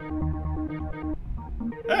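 Music loop pitched up an octave and run through about 18 stacked FL Studio Gross Beat effects, playing back as sustained pitched notes over a low bass pulse. It sounds muffled, like it's underwater.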